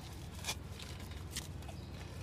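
Soft footsteps on grass with the handling rustle of a handheld phone, two brief scuffs about half a second and a second and a half in, over a low steady rumble.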